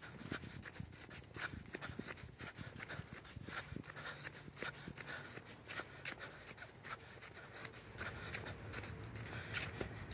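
Footsteps of a light jog on a concrete sidewalk, a steady run of soft footfalls a few times a second, with faint breathing and the rub of the hand-held phones.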